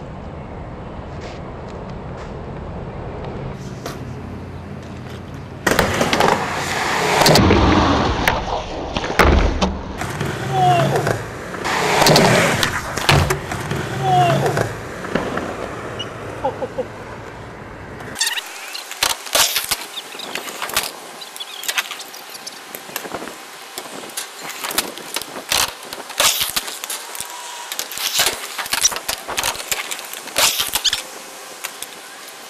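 Skateboards riding skatepark ramps: wheels rolling over the ramps, with many sharp clacks of boards popping, hitting and landing, loudest in the last third. The first few seconds hold only a steady low street rumble.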